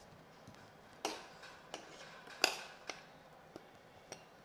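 Several sharp metal clinks and knocks from a steel ladle and a stainless steel cooking pot being handled, the loudest about two and a half seconds in.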